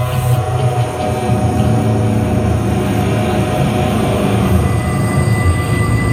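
Live amplified music: sustained held tones over a steady low bass drone.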